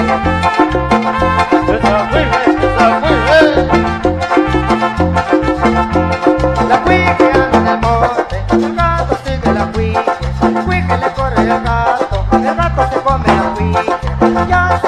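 Instrumental passage of a norteño corrido, without singing: accordion melody over bajo sexto and bass, with the bass pulsing on a steady beat.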